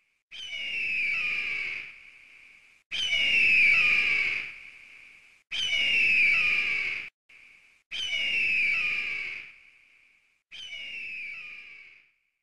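A bird of prey's screaming cry, given as an eagle call, sounding five times about two and a half seconds apart. Each cry is a long, hoarse, high scream that falls slightly in pitch and fades out. The last one is shorter.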